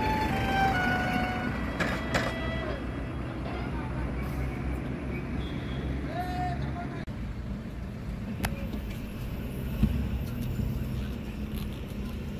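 Steady low rumble of road traffic and vehicle engines at a highway toll plaza, with a brief drop in level about seven seconds in.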